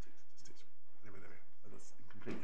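Faint, indistinct voices of people talking away from the microphones, with light scratching and rustling of papers being handled, over a steady low hum.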